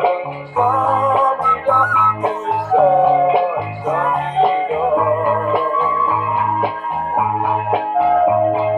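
Bamboo suling flute playing a traditional melody, with sliding, ornamented notes, over an accompaniment with a steady repeating bass line.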